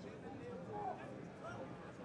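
Indistinct voices of several people talking in the background, faint and overlapping, over open-air ambience.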